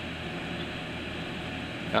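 Steady background hum with a soft, even hiss, the constant noise of a small room with something running, such as a fan or air conditioner.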